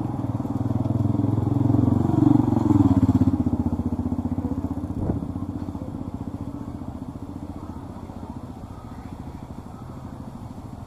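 A motor vehicle's engine passing close on the road: it grows louder, peaks between two and three seconds in with its pitch dropping as it goes by, then fades away. A short knock sounds about five seconds in.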